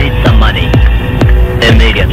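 Hard techno track: a heavy kick drum pounds out a steady fast beat, with synth notes gliding up and down above it.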